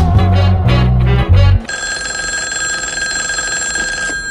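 Electronic trip-hop music: a beat with heavy bass, drums and a wavering lead melody stops abruptly about one and a half seconds in. A steady, high ringing tone is left, held to the end.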